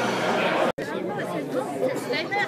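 Indistinct chatter of several people talking at once in a large, echoing room. It cuts off abruptly a little under a second in, then gives way to people talking more plainly.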